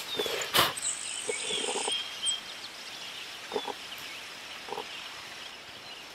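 Forest-floor handling sounds while porcini mushrooms are picked: a sharp snap about half a second in, then scattered short rustles and knocks among leaf litter, with faint bird chirps.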